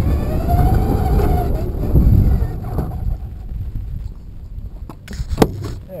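Electric motor of a Traxxas Slash RC truck whining, rising then falling in pitch, over a loud rumble of tyres and chassis on asphalt, picked up through a camera taped onto the truck's body. The sound drops off after about three seconds, and there is one sharp knock near the end.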